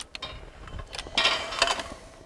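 A few sharp clicks from the toggle switches on a clay target trap's control box. About a second in, the Promatic Huntsman trap's electric motor and gearbox start running with a mechanical clatter.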